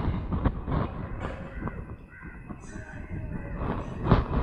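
Outdoor ambience: a low rumble of wind on the microphone with a few short knocks, and faint bird calls around the middle.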